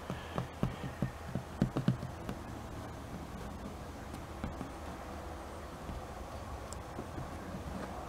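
Fingertips tapping and pressing a sticker against a cabinet door, a quick run of soft knocks in the first two seconds or so. After that only a faint low steady hum is left.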